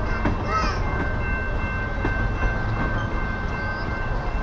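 Freight-type train cars rolling past with a steady low rumble, and a thin high-pitched tone held throughout.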